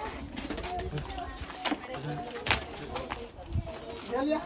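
Voices talking in the background, with a few sharp knocks, the loudest about two and a half seconds in.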